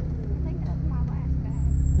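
Off-road 4x4's engine running at low speed, heard from inside the cab: a steady low drone that grows louder about one and a half seconds in.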